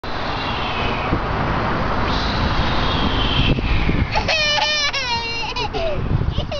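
Steady rushing street and outdoor noise for about four seconds, then a toddler's long, high-pitched cry, held for nearly two seconds with a couple of brief breaks.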